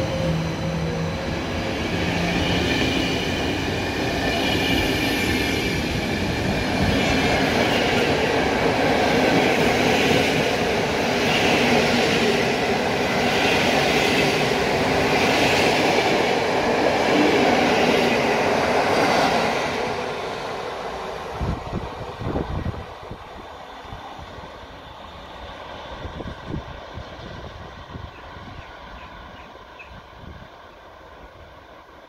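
Electric-hauled passenger train running past on the rails. The wheels clatter over the rail joints in a regular rhythm. After about twenty seconds the sound fades as the train moves away, with a few last knocks before it dies down.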